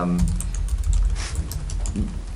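Typing on a laptop keyboard: a run of light key clicks over a steady low rumble.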